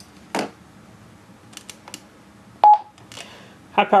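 TYT TH-9800 mobile transceiver's key beep: one short beep about two and a half seconds in, after a few soft button clicks, as the radio is switched from the 6 m to the 2 m band.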